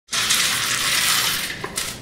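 A steady hiss of noise that fades away over the last half second, with a light click near the end.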